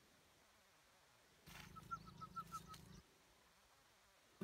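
About a second and a half in, a small bird gives a quick run of about six short, even chirps over a faint low hum, lasting about a second and a half; the rest is near silence.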